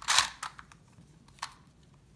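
Rubik's Clock wheels clicking as they are turned: a quick burst of ratcheting clicks right at the start, then a few faint clicks as the puzzle is handled.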